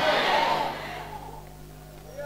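A pause in amplified speech: the echo of the voice through the hall's sound system dies away over the first half-second or so, leaving a low steady hum.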